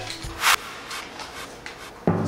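A short, sharp rustle of paper slips being handled about half a second in, followed by faint handling noise.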